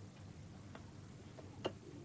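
A few faint clicks of a metal fork against the baking tray and plates while potato pancakes are served, the loudest near the end.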